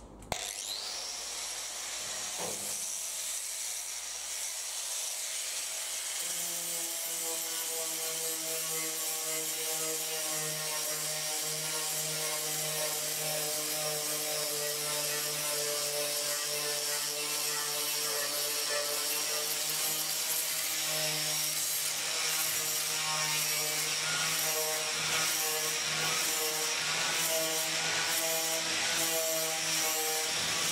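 A handheld electric disc sander starts up and runs steadily with a high whine, sanding the steel body panels of a 1974 Ford Cortina Mk3 shell.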